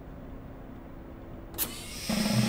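A faint, steady low hum, with one short sharp click about one and a half seconds in.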